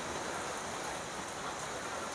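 Steady, even hiss of background noise with no clear events in it.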